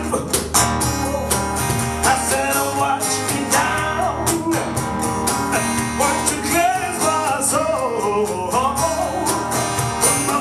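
Live acoustic band music: an acoustic guitar strummed with a cajon keeping a steady beat, and a man's voice singing over them.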